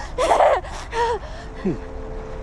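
A girl gasping and whimpering in panic, with sharp voiced breaths and a short cry, from a TV drama scene. A man's voice says "me" near the end.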